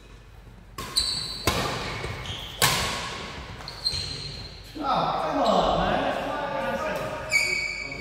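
Badminton rackets striking a shuttlecock in a rally: about five sharp smacks, ringing in a large hall. Men's voices join from about five seconds in.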